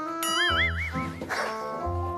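Light background music with a bass line. Over it, a high wavering tone warbles up and down for about a second, starting just after the beginning.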